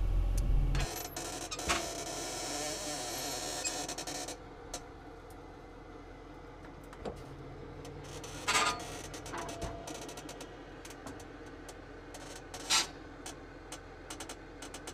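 Tow truck on the move, a quiet bed of vehicle noise with scattered faint clicks and rattles; a hiss in the first few seconds dies away.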